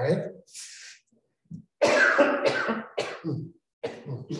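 A man speaking, his voice muffled by a face mask and a poor microphone, so the words are hard to make out. There is a short word at the start and a longer run of speech from about two seconds in.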